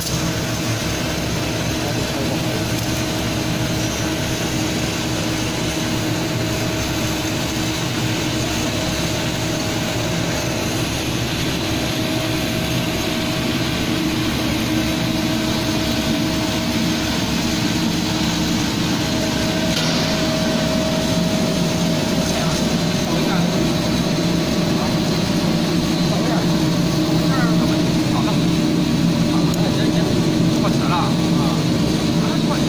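EPE foam sheet extrusion line running: a steady machine hum and rush with a few held tones, unchanging throughout.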